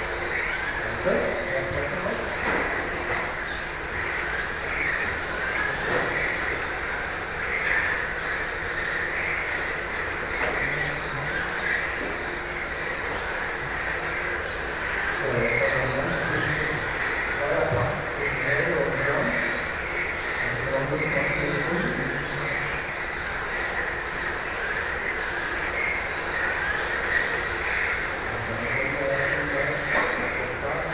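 Several electric RC GT cars with 17.5-turn brushless motors racing round a track: high-pitched motor whines rise and fall over and over as the cars accelerate out of corners and brake into them, layered over one another throughout.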